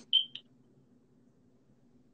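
A click followed by a short high-pitched beep and a second, briefer beep, all within the first half second; then only a faint low hum.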